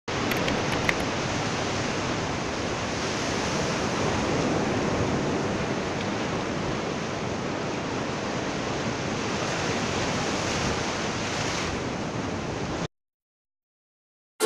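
Surf washing onto a sandy beach around rocks, a steady rush with a couple of faint ticks in the first second. It cuts off abruptly near the end.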